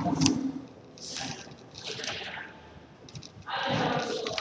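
Breath noise on a close headset microphone: a couple of soft exhalations, then a heavier one near the end.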